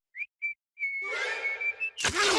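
Cartoon whistle sound effect: two short high whistle notes, then one long held whistle note that rises slightly at the end, with a hiss under it.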